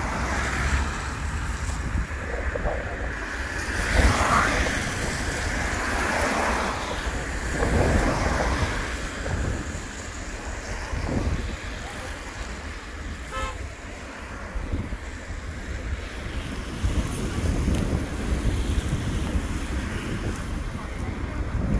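Wind buffeting the microphone over the hiss of traffic on a wet road, with swells about 4 and 8 seconds in as vehicles pass.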